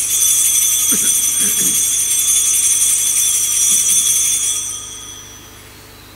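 Small altar bells ringing in a cluster of high tones, starting suddenly, holding steady for about four seconds, then fading away.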